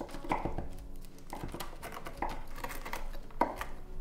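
Chef's knife chopping crisp fried bacon on a wooden chopping board: a series of uneven knocks as the blade comes down on the board.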